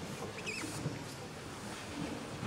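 Faint lecture-hall room tone with light audience rustling, and a brief high, wavering squeak about half a second in.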